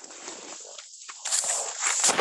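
Irregular rustling and scraping noise from a participant's open microphone on a video call, growing louder about two-thirds of the way in.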